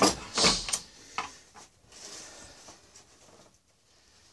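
A sharp clank and a short scraping rattle as the makeshift jack-and-stand rig is shifted, then two lighter knocks within about the next second, and much quieter after that.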